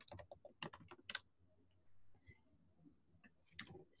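Faint typing on a computer keyboard: a quick run of keystrokes in the first second or so, then near silence, with a few more clicks just before the end.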